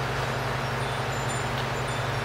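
Steady low background hum with a light hiss, even throughout, with no knocks or clicks standing out.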